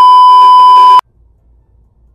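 TV colour-bars test-tone bleep edited in as a sound effect: a single loud, steady, high beep about one second long that cuts off suddenly.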